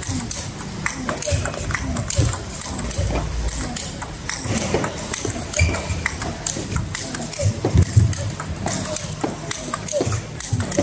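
Table tennis multiball drill: plastic balls struck in quick succession, each one clicking off the bat and bouncing on the table, with balls dropping to the floor, over the chatter of a large hall.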